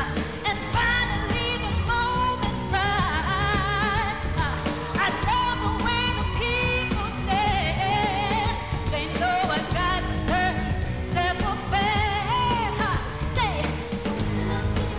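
A woman singing a dance-pop song live over a backing track with a steady, heavy beat, her voice bending and wavering through ornamented runs.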